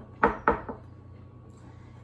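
Kitchen knife cutting through a bread sandwich and striking a wooden cutting board: two sharp strokes about a quarter second apart early on, then a smaller one.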